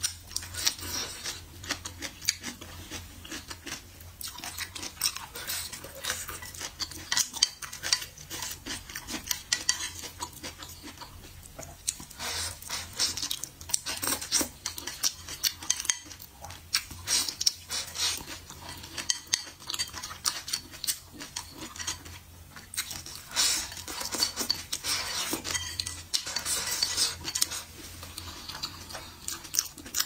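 Wooden chopsticks clicking and scraping against a ceramic bowl while picking up the last of the food, many short irregular clicks, with chewing.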